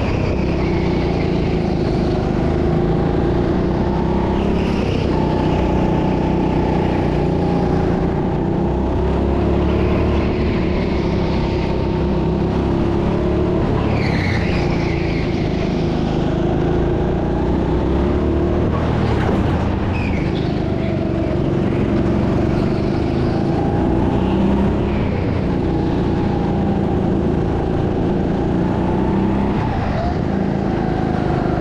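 Rental Biz go-kart's engine running steadily as heard from the driver's seat, its pitch rising and falling a little through the corners. Brief tyre squeals from the kart sliding on the smooth indoor floor come twice near the middle.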